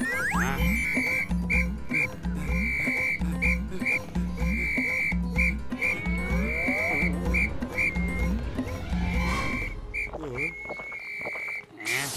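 Electronic sci-fi cartoon soundtrack: a high beeping tone pulsing in short and long notes over a regular low pulse, with swooping glides in pitch.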